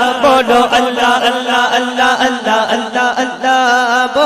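A man singing a Punjabi devotional naat into a microphone in long, wavering melismatic phrases, over a steady low held note.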